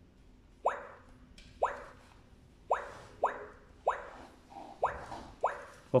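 Keypad of a Clementoni Doc educational robot giving a short electronic bloop that drops quickly in pitch with each button press, seven presses in all, as a route is keyed into it.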